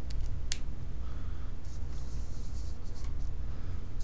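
Felt-tip marker and hand on paper: a few sharp clicks in the first half second, then a soft scratching from about one and a half to three seconds in, over a steady low hum.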